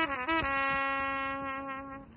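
A brass instrument slides down to a long held low note that slowly fades away: the end of a descending phrase.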